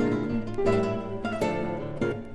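Two classical guitars playing a duet: a quick run of plucked notes and chords.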